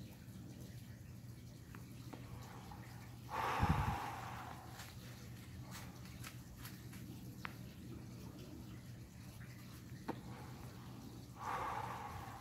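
A person breathing out cigarette smoke about three and a half seconds in, a short breathy rush with a low puff of breath on the microphone, and another breath near the end, over a faint steady background hum.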